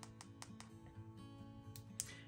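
Faint background music with soft, sustained guitar-like notes, and a few light taps of an Apple Pencil on an iPad's glass screen.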